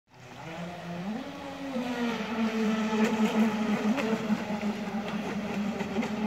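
Thundertiger Avanti brushless RC speedboat running fast across the water: a steady motor note that climbs in pitch about a second in and then holds, with a hiss of water under it.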